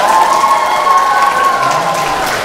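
Audience applauding, a dense patter of many hands, with one long held high tone running over it.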